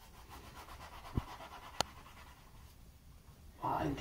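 Faint knife-and-bread handling sounds as soft pav buns are sliced over an iron tawa, with two sharp light clicks a little over a second in, about half a second apart. A voice starts near the end.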